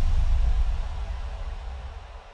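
A deep rumbling boom from an edited-in sound effect, struck just before and fading slowly: a suspense sting between 'ready' and 'go'.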